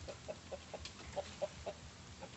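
A chicken clucking: a run of short clucks, about four a second.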